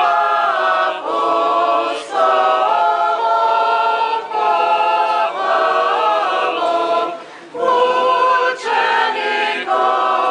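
Choir singing Serbian Orthodox church chant a cappella, in held multi-voice chords phrase after phrase, with a brief breath pause about seven seconds in.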